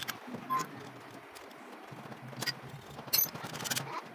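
Thin tin can being worked by hand: scattered sharp metallic clicks and scrapes, with a quick cluster of clicks about three seconds in.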